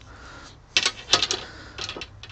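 Hickory-shafted golf irons being handled, giving a few quick clusters of light clicks and knocks as the wooden shafts and iron heads tap against each other.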